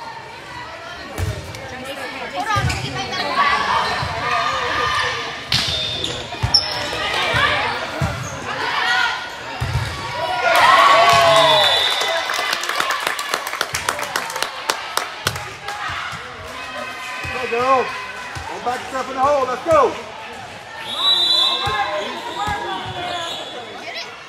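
Volleyball rally in a large echoing gym: the ball is struck and bounces on the court again and again, while players and spectators shout and cheer, loudest around the middle. Short high squeaks come and go.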